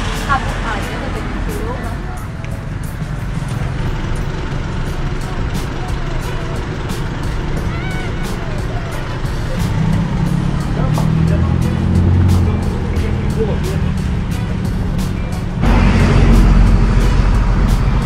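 Background music with a steady beat over street and traffic noise. Near the end a louder rush of motorbike riding noise, wind and engine, comes in suddenly.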